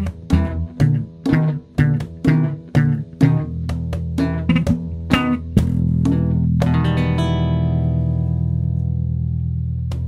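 Band instrumental passage: guitar and bass guitar play a riff of short, choppy chord strokes. About five and a half seconds in they hit a held chord that rings out and slowly fades.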